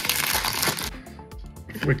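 A trading-card pack's shiny foil wrapper crinkling as it is torn open for about the first second, then softer clicks and rustles of the stiff cardboard cards being pulled out and handled.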